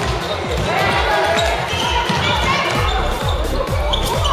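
Floorball match in a sports hall: frequent low thuds of players running on the hall floor, with players and spectators calling out over them.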